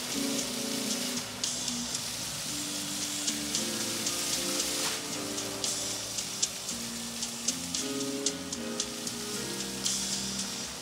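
Jets of a lit dancing fountain splashing onto a wet deck, with frequent short sharp ticks. A slow melody of held notes plays along with the fountain show.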